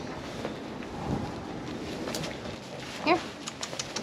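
A goat kid suckling from a nursing bottle: soft, uneven sucking noises with a few faint clicks.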